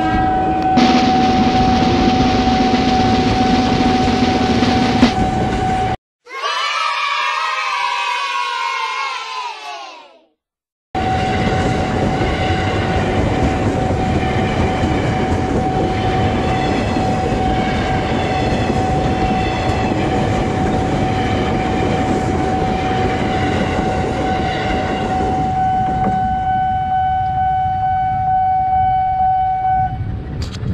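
Ex-JR 205 series electric commuter trains running over a level crossing: dense wheel and running noise, with one steady high tone from the crossing's warning signal sounding over it. From about six to eleven seconds in, a different sound of several pitches falling together takes over, then the train noise and the tone return. The train noise eases in the last few seconds.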